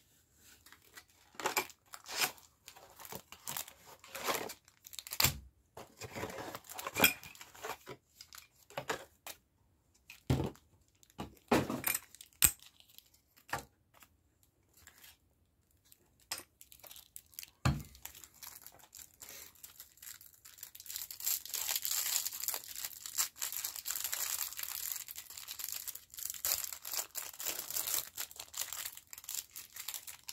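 Hands handling Pokémon TCG collection contents: a scattering of short knocks and rustles as items are picked up and set down. About two-thirds of the way in comes a run of roughly ten seconds of continuous crinkling and tearing of packaging.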